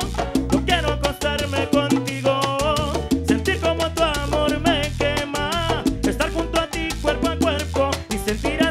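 Live salsa band playing, with dense rhythmic percussion, a walking bass line and a bending melodic lead line.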